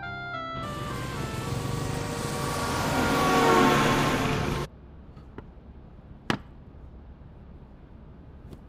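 A few piano notes, then night road traffic: motorbikes and a bus going past, swelling to a loud rush that cuts off suddenly a little over halfway through. After it, quiet room tone with one sharp click.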